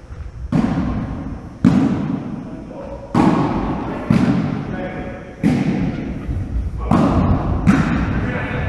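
A volleyball being struck hard by hands during a rally, about seven sharp thumps in eight seconds, each one echoing in the large gym.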